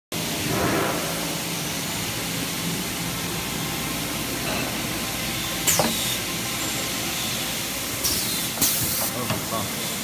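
Toilet paper packaging machine running: a steady mechanical hiss and rattle, with a sharp clack about six seconds in and short bursts of air hiss near the end.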